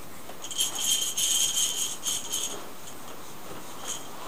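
A small metal bell jingling in short, uneven shakes, loudest between about one and two and a half seconds in, with a brief faint jingle again near the end.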